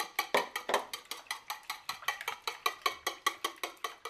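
A utensil beating eggs and milk in a mixing bowl, clicking against the bowl in a steady rhythm of about six or seven strokes a second.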